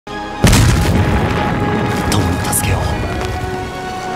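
A sudden loud explosion boom about half a second in, dying away into a rumble, under held orchestral music from an anime soundtrack.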